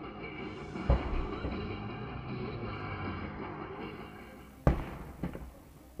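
Background music, broken by two sudden loud bangs from the blazing roadside fire exploding: one about a second in and one about a second before the end.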